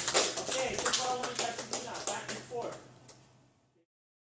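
A small group of children clapping, with scattered voices; the sound fades out before the end.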